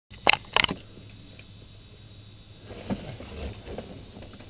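Two sharp clicks in quick succession near the start, then faint handling noises in a quiet light-aircraft cockpit with the engine not yet running.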